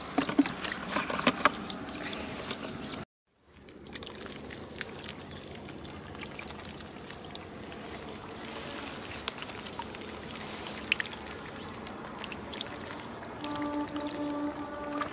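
Steady trickling water noise with scattered small clicks and splashes, broken by a brief dropout about three seconds in. A few small knocks sound in the first seconds.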